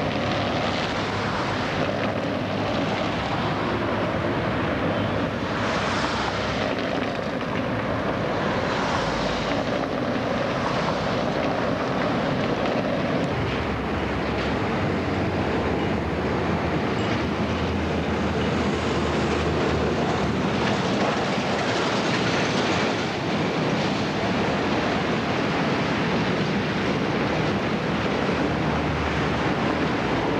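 Outdoor street noise with a tram and road traffic passing: a continuous rumble and hiss, no speech or music.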